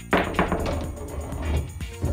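Pool jump shot: the elevated cue strikes the cue ball, which hops and clacks into the object ball, heard as two sharp knocks in quick succession just after the start, over background music.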